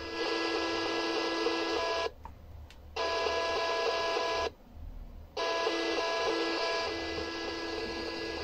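DIY TEF6686 DSP radio's loudspeaker playing weak FM reception: hiss with a few steady tones. As the squelch potentiometer is turned, the audio is muted twice, each time for about a second, and then comes back.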